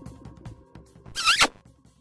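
Trailer background music with a quick ticking beat that fades out, then a short swish, like a zip or a scratch, about a second and a quarter in.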